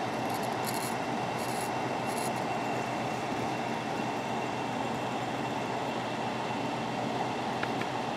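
Steady room air-conditioner hum. Three faint, short scratchy strokes in the first two seconds are a sharp knife blade shaving hair off a forearm.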